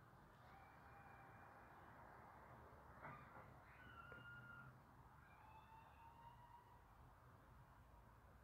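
Near silence: faint steady hiss with a few faint, brief thin tones about three to seven seconds in. The electric hand mixer seen whisking is not plainly heard.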